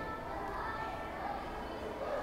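Faint background voices over steady room noise.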